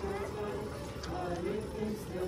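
A group of voices singing a slow hymn, with long held notes that move step by step in pitch.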